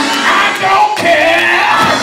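Church music: a man's amplified voice singing or chanting over organ accompaniment, with congregation voices calling out.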